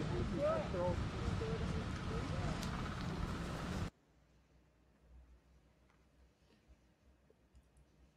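Field audio of a prescribed burn in a pine forest: a loud, uneven rushing of wind and fire noise with voices in it, which cuts off suddenly about four seconds in. After that only faint, scattered clicks and taps of a pen on a sketchbook page.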